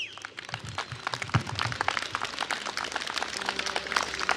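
Audience applauding after a song, a dense patter of hand claps that builds slightly, with a brief falling whistle at the very start. A faint sustained instrument note comes in near the end.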